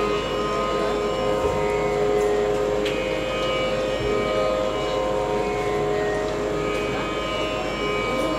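Live Carnatic music: violin and voice holding long, sustained melodic notes over a steady drone, with a few light drum strokes.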